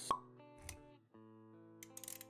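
Sound effects of an animated logo intro over background music: a sharp click just after the start, the loudest thing here, then a soft low thud, then held musical notes, with quick clicks starting again near the end.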